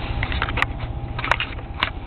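Calico kitten purring, a steady low pulsing rumble, with three sharp clicks about half a second apart near the middle and end.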